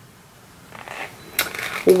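Light clicks and handling noise from a small plastic eyeshadow pigment jar being picked up and handled, with a sharper click about one and a half seconds in and another just after.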